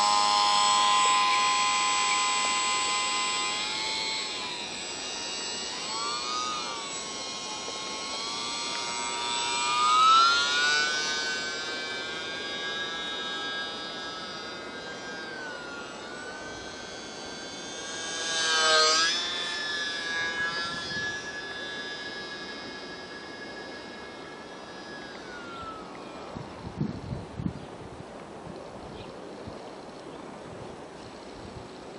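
Brushless electric motor and propeller of a UMX J-3 Cub model plane whining at high throttle, its pitch rising and falling with the throttle. It swells louder about ten and nineteen seconds in and grows fainter over the last few seconds.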